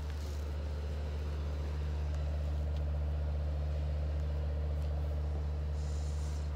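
A large engine idling: a steady, unchanging low drone.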